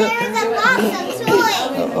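Young children chattering in high voices as they play.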